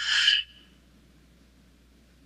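One short breath out near the microphone, a breathy rush about half a second long, at the start of a slow, paced breathing exercise.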